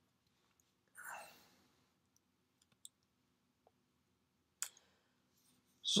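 Quiet room tone with a soft breath about a second in, then a single sharp mouse click about four and a half seconds in, advancing the lecture slide.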